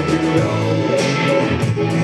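Live worship band playing: electric guitar strumming over a drum kit, with regular cymbal strokes and sustained keyboard notes.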